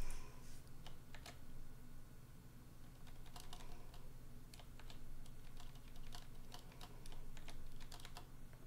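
Typing on a computer keyboard: irregular runs of keystrokes, several a second, with short pauses between.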